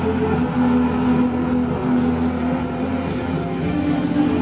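Live band music: a guitar playing over sustained low notes, with no singing.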